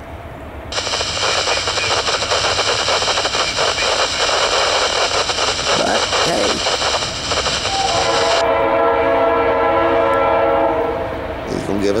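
Norfolk Southern freight locomotive's air horn sounding one long steady chord about two thirds of the way in, fading out near the end. Before it, several seconds of loud hissing noise that starts and stops abruptly.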